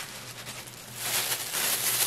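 Thin plastic film crinkling as it is handled and wrapped around a piece of rice cake. It starts about a second in and goes on unevenly.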